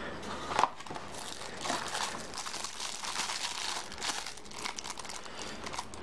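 Clear plastic bag crinkling and crackling as a boxed media player, sealed inside it, is lifted out and handled. There is a sharp knock about half a second in.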